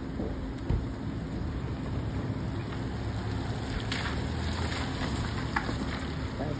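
Steady rain falling on a wet asphalt car park, an even hiss over a low rumble, with a single short knock about a second in.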